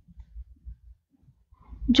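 Faint, irregular low thuds from a stylus writing on a drawing tablet.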